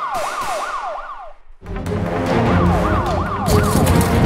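Police siren in a fast yelp, its pitch sweeping up and down about three times a second, over music with a steady bass. Both cut out briefly about a second and a half in, then the siren yelp comes back.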